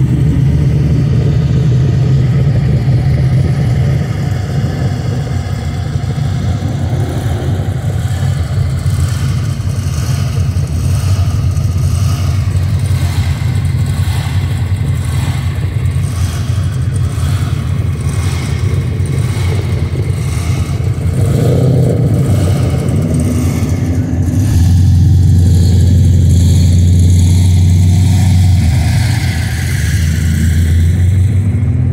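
Modified cars' engines rumbling at low speed in a slow street cruise, with some revving. About 25 seconds in, a closer engine's deep exhaust note grows louder and holds steady for several seconds.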